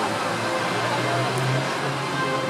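Steady outdoor city ambience: a constant wash of traffic and crowd noise with a faint low hum.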